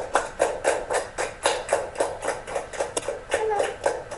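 Hands clapping in a steady rhythm, about four claps a second, welcoming a guest on stage. A voice sounds briefly near the end.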